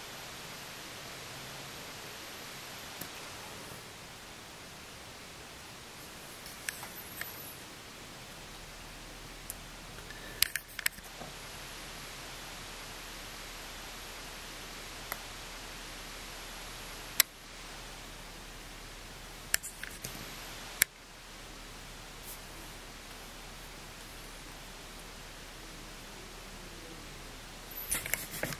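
Steady low hiss of room tone, broken by a handful of short sharp clicks and small rustles from hands handling a small LED strip module near the camera.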